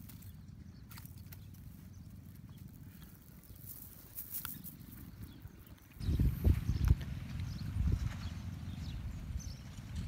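Cast net being handled and shaken as a crab is picked out of its mesh: small clicks and rustles over a steady low rumble. About six seconds in, the rumble turns abruptly louder and more uneven.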